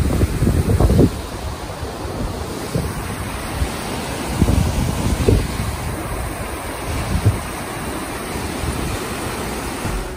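Rushing river water running over rocks and rapids, a steady hiss, with wind buffeting the microphone in low gusts, heaviest in the first second and again around four to five seconds in.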